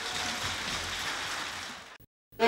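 Audience applauding in a hall, an even patter that dies away near the end.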